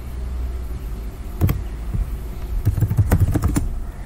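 Keystrokes on a computer keyboard: one click about a second and a half in, then a quick run of several keystrokes near the end, typing a short word into a browser's address bar. A steady low hum runs underneath.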